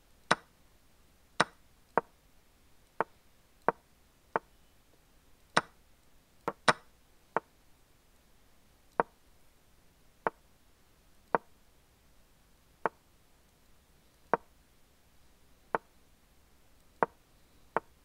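Chess move sound effects from an online chess game, one short wooden click for each move played in fast bullet chess. There are about eighteen of them, irregularly spaced, often about a second apart and sometimes two in quick succession.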